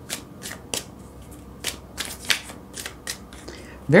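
A deck of tarot cards being shuffled by hand: a series of irregular, crisp card clicks, about a dozen in four seconds.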